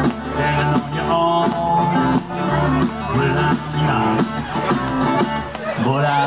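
Live country-style band playing an instrumental passage with strummed acoustic guitars and drums.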